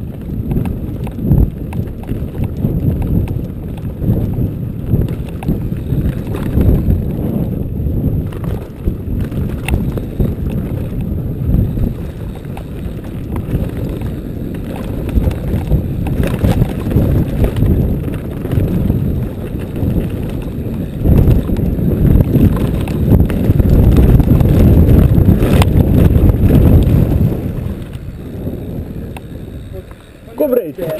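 Mountain bike descending a rough dirt and rocky trail at speed: tyres over dirt and stones, the bike rattling with constant knocks and clicks, and wind rushing over the microphone. It is loudest over a rocky stretch in the last third.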